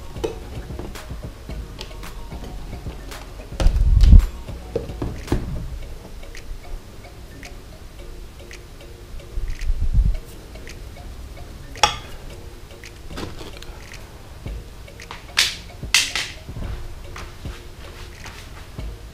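Soft background music under scattered light clicks and taps from metal tweezers working plant clumps into aquarium gravel inside a glass tank. There are two low thumps, the loudest near the start and another about halfway, and sharper clicks near the end.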